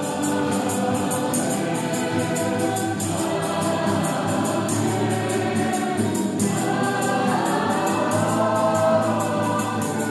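Church choir of mostly women's voices singing a hymn in harmony, accompanied by acoustic guitars, with a new phrase starting about six seconds in.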